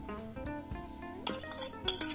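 Background music with guitar, over which sliced olives are tipped from a china saucer into a glass bowl, giving two sharp clinks, one about a second and a quarter in and one near the end.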